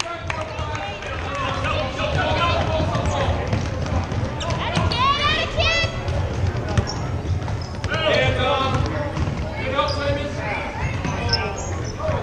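Basketball bouncing repeatedly on a hardwood gym floor, with voices of players and spectators echoing in the gymnasium.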